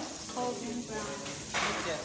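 Food frying in a pan on a gas stove, with a steady sizzle that grows louder for a moment near the end.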